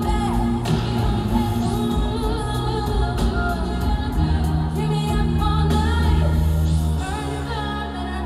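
Live pop concert: a woman singing into a microphone over the band's music, with heavy sustained bass, heard through the arena's sound system.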